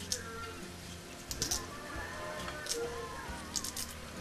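A knife cracking chunks off a raw peeled potato, the potato 'cachada': each piece is broken off rather than cut clean and drops into a bowl, giving short crisp snaps in small clusters, over quiet background music.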